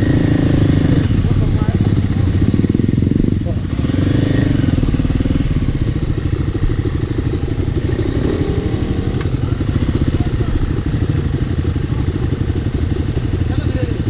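Dirt bike engines running at low revs close by, a steady chugging with slight swells of throttle. One bike is very loud, which the riders put down to its using too much oil.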